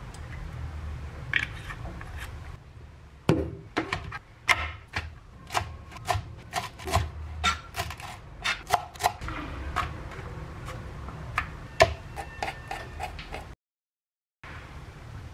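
Knife chopping on a cutting board: a run of sharp, irregular taps about two a second, which starts a few seconds in and cuts off suddenly near the end.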